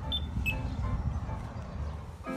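Pedestrian crossing push button pressed, giving short high beeps within the first half second, over a low steady rumble.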